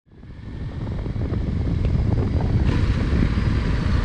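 Motorcycle engine running at low road speed under a dense low rumble of wind on the microphone. The sound fades up from silence over the first second.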